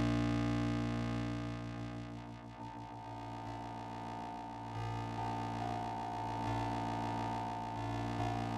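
Square-wave synth oscillators running through a Clatters Sibilla drone module with its EXP-FX expander working as a stereo pitch-shifting delay effect, as the dry/wet control is turned toward the wet signal. The steady drone thins out over the first few seconds, and new pitch-shifted tones come in about halfway through.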